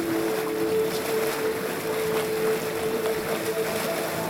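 Cold-water geyser erupting at Wallenborn: a steady rush of spouting, splashing water.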